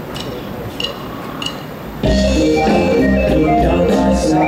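Rock band playing through a stage PA during a soundcheck: a few soft taps and stray notes, then about two seconds in the full band comes in loud with bass, drums and guitar, starting from the top of a verse.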